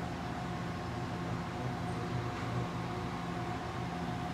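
Steady mechanical room hum with a faint constant whine, unchanging throughout.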